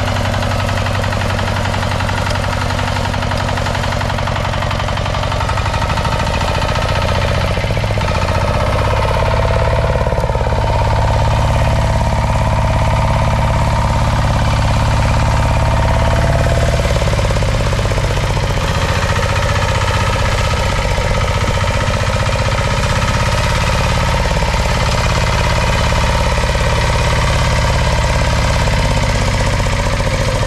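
Single-cylinder diesel engine of a walk-behind power tiller running steadily under load as it drags a wooden levelling plank over tilled soil. It gets slightly louder about six seconds in, then holds steady.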